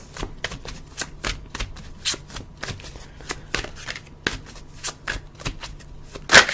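Deck of tarot cards being shuffled by hand, a steady run of quick, irregular card slaps and flicks, several a second.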